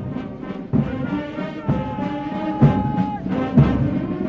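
Military brass band playing a march, with drum beats about once a second and a long held brass note in the middle.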